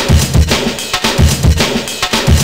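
Breakbeat drum pattern from an Akai MPC1000 sampler: kick and snare hits in a steady, loud groove.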